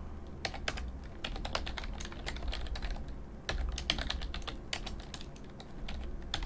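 Typing on a computer keyboard: a run of irregular, quick key clicks, with a brief lull about three seconds in.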